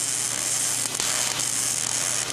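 Electric arc welder tack-welding the steel tubes of a rocket rack: a steady hiss with a low hum underneath.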